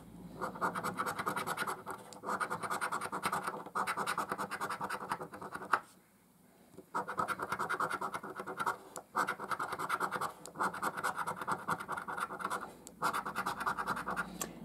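Edge of a coin scraping the silver latex coating off a lottery scratchcard in quick back-and-forth strokes. The strokes come in runs of a second or two with short breaks, and there is a longer pause about six seconds in.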